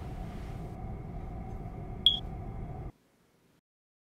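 A single short, high-pitched electronic beep about two seconds in, over a steady low room hum that cuts off abruptly just before the end, leaving near silence.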